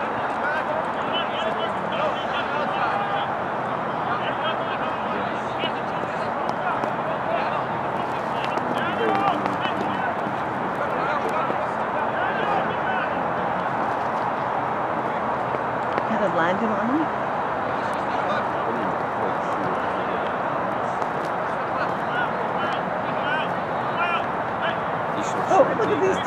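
Indistinct overlapping voices of players and onlookers calling and talking across a football pitch: a steady murmur of speech with no single clear voice.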